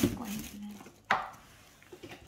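A single sharp knock about a second in, from a hard object set down on the wooden tabletop, after a brief spoken word at the start.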